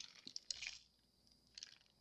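Faint rustle and a few small clicks from a plastic zip bag of glitter being picked up, in the first half second or so, then near silence.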